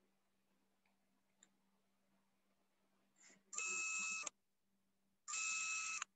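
Two short bursts of hissy, buzzing noise with steady whistle-like tones running through them, each under a second long and starting and stopping abruptly, over a faint steady low hum.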